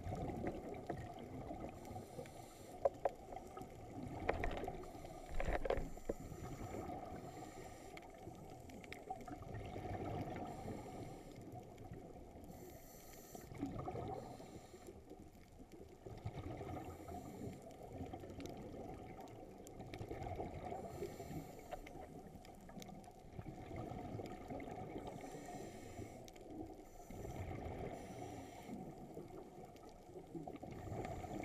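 Muffled underwater sound on a reef, heard through a camera's waterproof housing: a low, rising and falling rush of water, with a few sharp clicks in the first six seconds.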